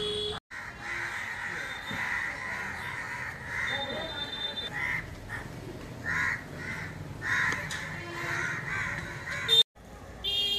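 Birds calling repeatedly over a steady background, the calls coming about once a second in the second half. A brief, loud, high tone sounds just before the end.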